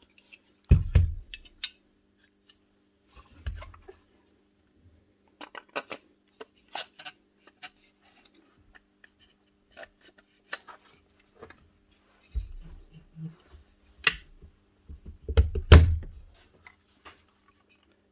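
Scattered clicks, taps and rubbing of plastic and metal parts of an old Hitachi router as its motor housing is fitted back over the armature and handled, with a heavier bump near the end.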